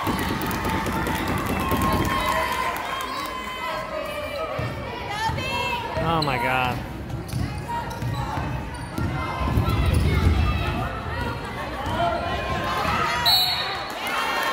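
Basketball dribbled on a hardwood gym floor amid the chatter and shouts of spectators and players.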